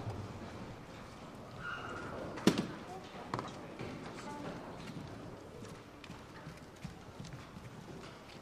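Audience murmur and shuffling in a large hall while the orchestra waits to begin, with one sharp knock about two and a half seconds in and a few lighter knocks later. A brief high beep sounds about two seconds in.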